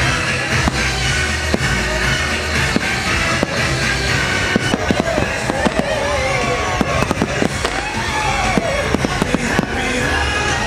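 Fireworks going off in a rapid string of sharp bangs over loud show music, the bangs coming thickest in the second half.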